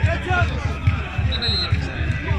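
Football supporters chanting over a steady bass drum beat, about four beats a second. A short high whistle tone sounds about one and a half seconds in.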